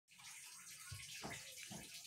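Faint steady hiss, with a few soft low sounds between about one and two seconds in.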